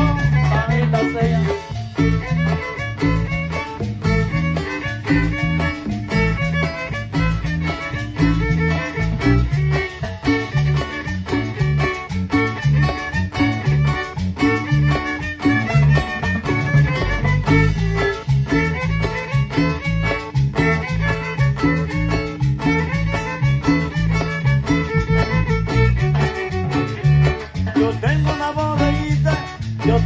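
A chanchona band playing tropical dance music live, with violins and guitar over a steady, prominent bass line and a regular beat.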